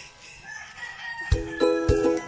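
A rooster crowing faintly, a single long call in the first second or so. About 1.3 s in, chiming background music with a beat comes in and is the loudest sound.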